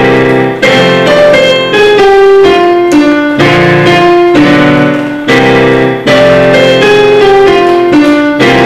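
Solo digital piano playing full two-handed chords, a new chord struck roughly once a second in a steady rhythm.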